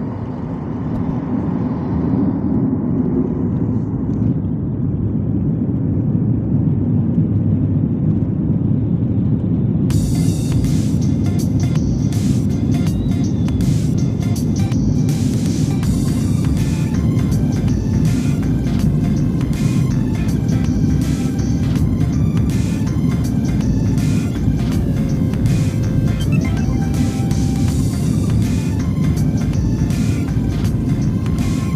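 Airliner cabin noise during the takeoff roll: a steady jet engine and runway rumble that grows louder and fuller about ten seconds in. Music plays over it.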